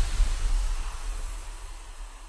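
Tail of a logo-intro sound effect: a low rumble and airy hiss dying away steadily.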